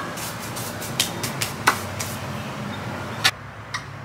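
Hands brushing and slapping together to knock off potting soil: a quick, irregular run of short slaps and taps, ending with a louder tap about three seconds in.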